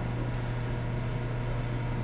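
Steady low machine hum with a faint even hiss, the constant background drone of running lab equipment.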